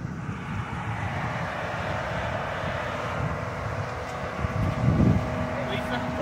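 A police SUV driving up the street and pulling in, giving a steady engine and tyre noise.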